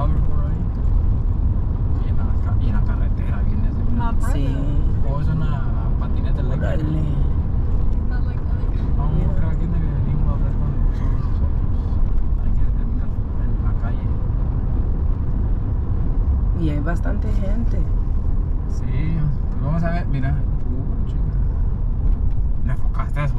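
Steady road and engine noise heard inside a moving car's cabin at highway speed, with low voices talking now and then over it.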